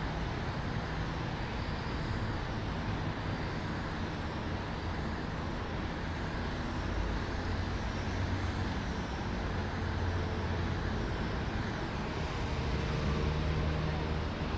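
Steady outdoor city background noise: a low rumble of distant road traffic, with a faint engine hum coming in near the end.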